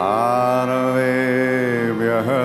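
A deep male voice chanting a Sanskrit mantra, holding one long note that rises slightly as it begins, over a steady drone.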